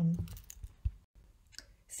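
The tail of a woman's spoken word, then a pause with a few faint short clicks and one sharper click just under a second in.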